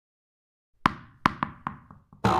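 Sound effects for an animated logo: five short, hollow knocks in quick succession starting nearly a second in, each with a brief ringing tail, timed to cartoon tennis balls popping onto the screen.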